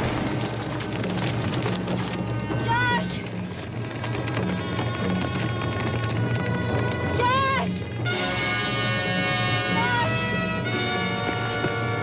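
Dramatic orchestral film score over the hoofbeats of galloping horses, with high yelling cries about three seconds in and again around seven seconds. Held brass and string chords swell in from about eight seconds.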